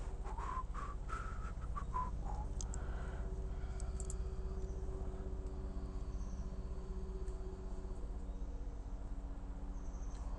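Steady low hum throughout, with a quick run of short chirps and clicks in the first two and a half seconds, then only the hum.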